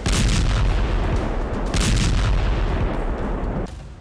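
Deep rumbling blasts with a crackling hiss, like explosions or gunfire laid over footage of a burning ship. There are two sharper bursts, one at the start and one about two seconds in, and the sound dies away shortly before the end.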